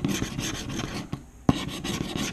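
Scratch-off lottery ticket being scratched: quick rasping strokes across the coating, with a short break a little after a second in, then a sharp stroke as the scratching resumes.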